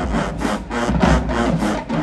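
Marching band playing in the stands: brass over a driving drum rhythm, with strokes about four times a second.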